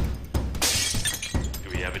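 A loud shattering crash about half a second in, lasting under a second, over the trailer's music.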